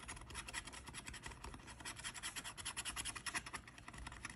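A coin-style metal scratcher rubbing the silver latex coating off a paper lottery scratch-off ticket: a quick, dry scratching in rapid short strokes, many a second.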